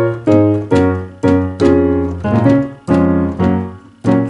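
Gospel piano chords played on a digital keyboard with a piano sound. About eight chords are struck roughly every half second, each ringing and fading before the next. The run opens on a B-flat minor chord over B-flat in the bass.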